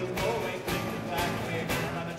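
Live band music from a drum kit, acoustic guitar and tuba, with a steady beat of about two drum hits a second.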